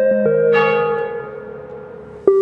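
A bell rings once about half a second in, right after the last notes of a short chiming melody, and fades away over the next second and a half.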